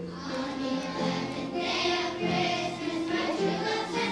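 Group of children singing with a musical accompaniment whose low note recurs about once a second.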